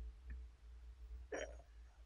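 Clay lid of a Yixing zisha teapot being lifted off the pot: a faint tick, then one short clay-on-clay clink about 1.4 seconds in, over a faint low hum.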